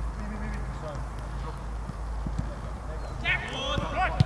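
Football training on an open pitch: players calling out to each other, with a sharp, high shout about three seconds in, over a steady low hum.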